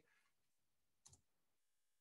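Near silence: room tone, with one faint, brief click about a second in.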